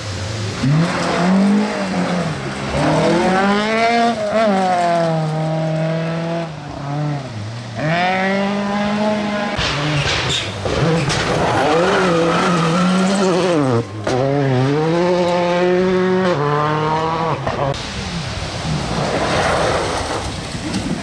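Rally car engines revving hard as the cars pass on a gravel stage, the note rising and falling again and again through gear changes.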